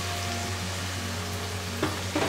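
Spice paste and small raw shrimp frying in oil in a pot, a steady sizzle, with a brief knock near the end.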